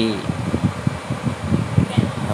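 Induction cooker's cooling fan running, with an uneven, fluttering low rumble.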